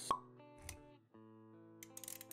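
Motion-graphics sound effects over background music: a sharp pop just after the start, a low hit about two-thirds of a second in, then a brief break before held music notes resume, with quick clicks near the end.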